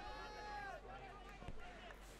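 Faint distant voices of players and spectators at the ground, with one long, fairly high call in the first second, over low crowd murmur.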